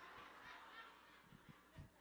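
Near silence, with faint scattered laughter from an audience fading away over the first second.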